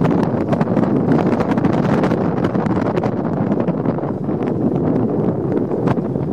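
Wind buffeting the microphone over the rumble of a vehicle driving on a rough dirt road, with scattered short rattles and knocks.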